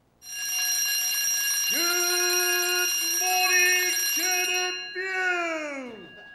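Alarm clock bell ringing steadily, stopping a little before the end. About a third of the way in, a voice joins with a long drawn-out groan that slides down in pitch as it fades.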